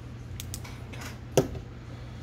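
A few light clicks, then one sharp knock about one and a half seconds in, from small fly-tying tools being handled and set down at the vise, over a low steady hum.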